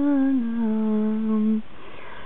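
A woman humming a lullaby: a held note that steps down to a lower one about half a second in, then breaks off about a second and a half in.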